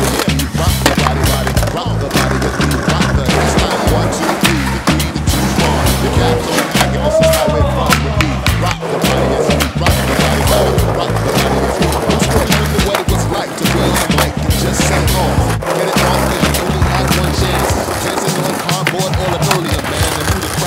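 Skateboards ridden over a music track with a heavy, repeating bass beat: wheels rolling on pavement and scattered sharp clacks of boards popping and landing.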